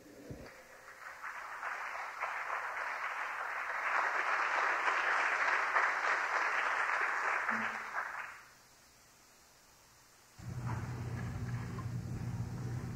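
Audience applauding: the clapping builds over a few seconds, holds, then dies away about eight seconds in. A steady low hum comes in about ten seconds in.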